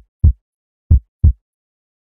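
Heartbeat sound effect: deep double thumps about a second apart, twice, then it stops.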